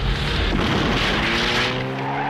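Cartoon sound effects: a low rumble and rushing noise, then a car engine revving up in a steadily rising pitch as an animated Volkswagen Beetle speeds away.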